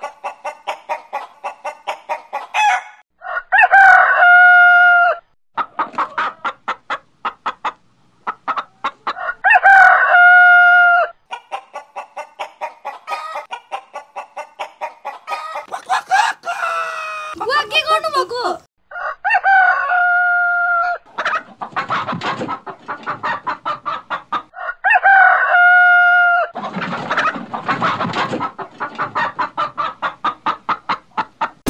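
Chicken clucking in quick runs, broken about every five or six seconds by a loud drawn-out call held on one pitch, four calls in all.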